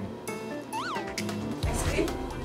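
Background music with a single short cat meow, rising then falling in pitch about a second in, and a rising hiss just before the end.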